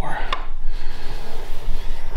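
A hand-held steel burnisher stroked along the edge of a thin steel scraper blade clamped in a vise: a short metal-on-metal scrape with a sharp click near the start, then fainter rubbing. The stroke draws out the edge's steel as the first step in raising a burr.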